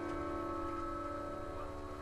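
Electric guitar chord left to ring, its notes holding steady and slowly fading, with no new strums.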